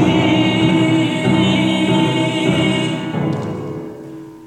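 A man's singing voice holding a long note over upright piano chords. It fades away about three seconds in, leaving the piano.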